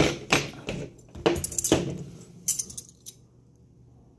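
Stainless steel wax carving tools clinking against one another and tapping on the table as they are picked up and gathered into a hand: a run of about seven light metallic clinks over the first three seconds.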